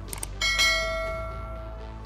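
A single bell strike about half a second in, ringing and fading over about a second, over a steady low drone of background music.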